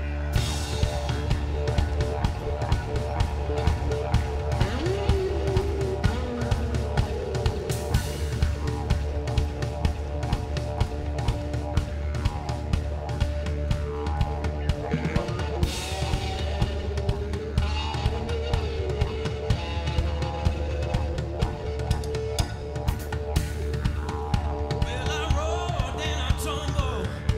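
Live rock band playing: a steady drum-kit beat of kick and snare over a sustained bass note, with guitar lines holding long notes above it.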